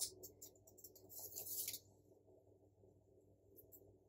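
Faint scratchy rustling of sticker paper being handled and pressed onto a planner page, in short bursts over the first second and a half or so, then near silence with a couple of tiny ticks.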